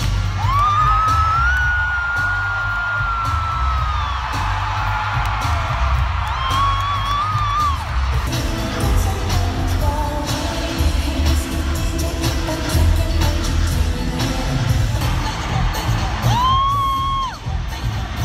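Live pop concert music in an arena, heavy pulsing bass and drum hits with singing, heard from the seats. Three long, high-pitched screams from fans near the microphone cut through: one near the start, one about six seconds in, and one near the end.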